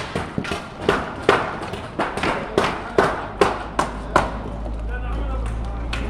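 A hammer knocking on wooden formwork as the timber shuttering is stripped from concrete columns: a quick run of sharp knocks, about two or three a second, that stops about four seconds in. A low steady rumble follows near the end.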